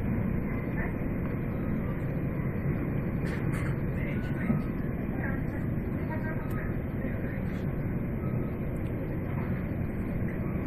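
Steady low rumble of a VIRM double-deck electric train running at speed, heard inside the passenger cabin.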